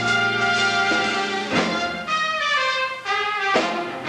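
Live band with brass playing an instrumental passage of held chords that change every second or so, with a falling run of notes in the second half.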